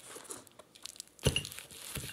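Cardboard box and plastic-wrapped parts rustling and crinkling as they are handled during unpacking, with one short thump about a second and a quarter in.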